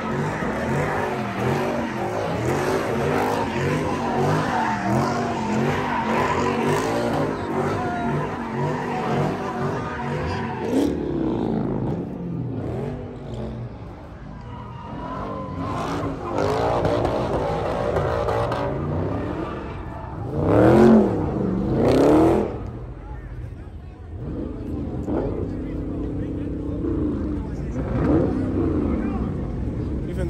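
A car engine revving hard and repeatedly, with tyre screech, as the car spins donuts, under the voices of a crowd. The dense revving thins out about a third of the way in, and a little past the middle come two loud revs that rise and fall.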